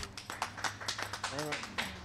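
A small group of people clapping, uneven and scattered, with a short voice sound about halfway through.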